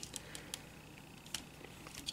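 A few faint, scattered clicks of hard plastic toy parts being handled: the arm of a Transformers Abominus combiner figure being moved and adjusted by hand.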